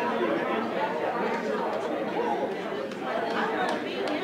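Many people talking at once in a large room, a crowd of congregants chatting and greeting one another, with no single voice standing out.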